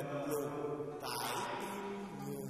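A voice chanting Vietnamese poetry in the traditional drawn-out recitation style (ngâm thơ), holding long sustained tones over soft instrumental accompaniment.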